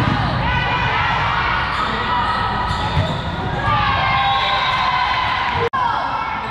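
Busy volleyball gym: many overlapping voices of players and spectators calling out, with the thump of a volleyball being struck about three seconds in.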